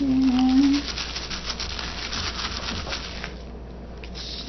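A plastic sandwich bag rubbed and crinkled against paper as marker ink is pressed onto it by hand, a fast scratchy rustling that fades out about three seconds in.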